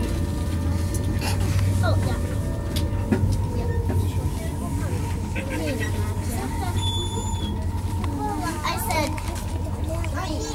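Steady low rumble of an ICE high-speed train running, heard inside the passenger carriage, with scattered voices of other people talking in the background.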